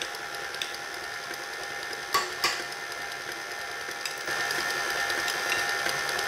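KitchenAid Artisan stand mixer running, its motor making a steady whine as the flat beater works soft brioche dough. Two sharp knocks come about two seconds in, and the motor grows a little louder about four seconds in.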